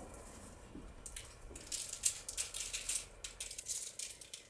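Brown sugar sprinkled by hand over unbaked rugelach on a parchment-lined baking tray: a faint, irregular patter of grains on the paper and dough, starting about a second in.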